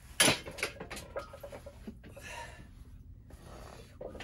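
Loaded barbell racked onto the bench's metal uprights with one loud clank about a quarter second in, followed by a few lighter rattles of the weight plates. Then two heavy, hissing breaths from the lifter recovering after the set.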